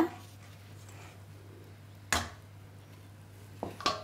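Kitchen bowls and utensils being handled on a tabletop: one sharp knock about halfway through, then two lighter clicks near the end, over a faint low hum.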